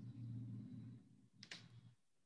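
Faint low hum through the first second, then a single sharp computer click about one and a half seconds in, as the PowerPoint slideshow is started.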